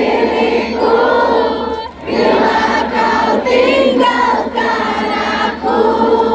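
Live group singing: many voices, a crowd joining a woman singer, sing a pop-rock song together in held notes, with a brief drop about two seconds in.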